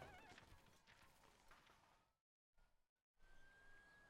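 Near silence: a faint fading tail of noise, a short dead gap, then a faint thin high tone held steady for about a second near the end.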